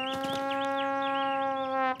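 A long held cry on one steady pitch for about two seconds, dipping slightly just before it cuts off.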